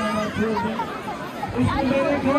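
People talking: only voices are heard, with no other sound standing out.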